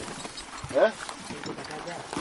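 A short, rising vocal sound from a person a little under a second in, over a quiet outdoor background with a few faint clicks.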